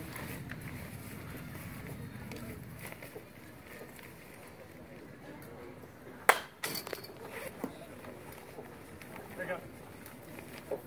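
A single sharp pop of a pitched baseball hitting the catcher's mitt about six seconds in, followed by a few smaller knocks, before the umpire calls the strike. Faint voices and a low murmur of the ballpark lie underneath.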